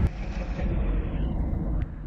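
Water gushing out of a cave spring over rock, a steady low rushing that grows duller toward the end.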